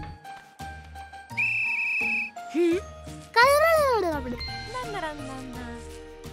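Light cartoon background music with a short, held high whistle-like tone about a second and a half in. A pitched sliding sound, like a wordless voice, rises and falls about three and a half seconds in.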